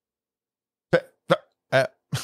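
A person's short laugh: three quick 'ha' bursts about 0.4 s apart, starting about a second in.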